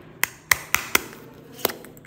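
Hard plastic egg capsule clicking in the hands as its two halves are worked apart: about five sharp clicks in under two seconds.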